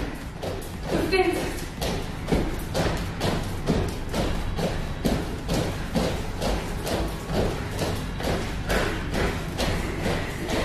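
Feet landing on the floor in a jumping exercise, a steady run of thuds at about three a second, with workout music behind.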